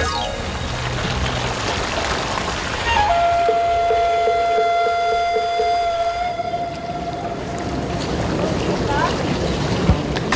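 Water gushing from a pool fountain spout and splashing down. From about three seconds in, a long held note with overtones sounds over it and fades out after about five seconds.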